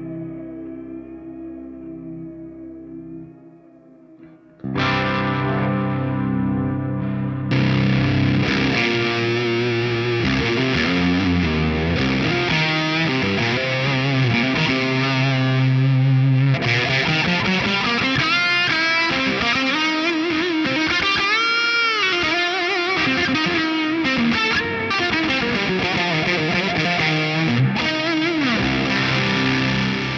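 Electric guitar played through a Quad Cortex amp-modeller pedalboard. It opens on a fading, ambient chord with wavering pitch. About four and a half seconds in, heavy distorted riffing and lead lines with pitch bends and glides take over.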